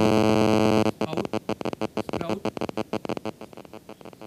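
A loud, steady, low-pitched buzz that cuts off suddenly about a second in. It is followed by rapid crackling clicks.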